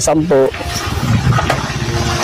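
A motor vehicle engine running nearby, a steady rumble with a hiss over it, starting just after a short bit of speech.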